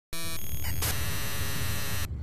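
Digital glitch and static sound effect: a loud hiss of white noise that starts suddenly with a brief buzzy tone. It shifts texture twice in the first second, then holds as steady static and cuts off abruptly at the end.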